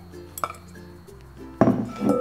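A light tap against glassware, then about a second and a half in a glass bowl is set down on a stone-like countertop with a sharp clink that rings briefly. Soft background music plays underneath.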